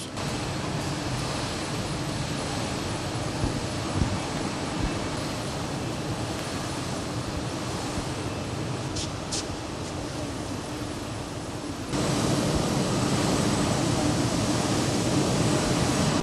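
Steady mechanical noise of textile mill machinery running, fabric passing over its rollers; the noise steps up louder about twelve seconds in.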